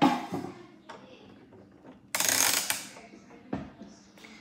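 Plastic toy-kitchen pieces being handled: a short scraping rattle about two seconds in, then a single knock near the end.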